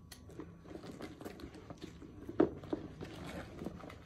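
Handling of a canvas tote bag: rustling and small clicks as a metal strap clasp is fitted to the bag's D ring, with one sharper click about two and a half seconds in.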